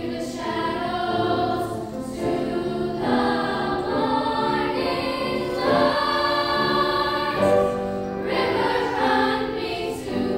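Girls' choir singing, with long held notes that change about once a second.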